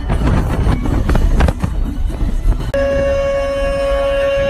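Wind buffeting and road rumble in an open convertible at highway speed, a dense low noise. About three seconds in, a steady held musical note with overtones takes over.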